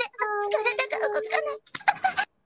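Soundboard clip of a woman's exaggerated anime-style orgasm cry: one long, held high note that breaks off about one and a half seconds in, then a brief sound near the end.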